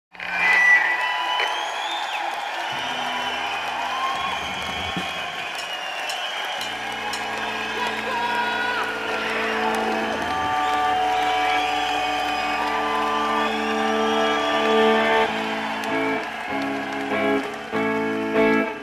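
Crowd noise with shouts and whoops, then an electric guitar through an amplifier holding low sustained chords from about six seconds in. Near the end the chords break into a choppy rhythm as a rock song starts.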